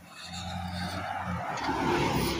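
A road vehicle passing close by: a low engine hum under tyre and road noise that swells toward the end.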